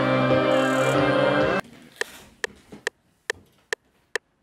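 A sampled beat loop with layered sustained tones playing back in FL Studio, cutting off abruptly about a second and a half in. A handful of short, irregular clicks follow.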